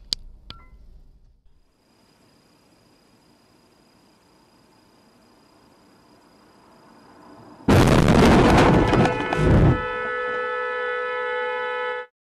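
Low, steady road hum, then, about two-thirds of the way in, a sudden, very loud collision noise lasting about two seconds. A car horn follows, held on steadily until the sound cuts off.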